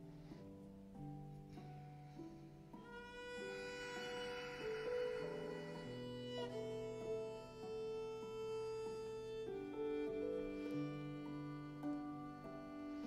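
Soft, slow instrumental background music: long held string-like notes over sustained low tones, with a higher melody note coming in about three seconds in.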